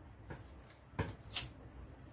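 Scissors cutting a paper sewing pattern, with two crisp snips about a second in and light paper rustling around them.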